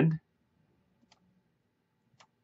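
A man's voice trails off at the very start, then one faint click of a computer mouse about a second in.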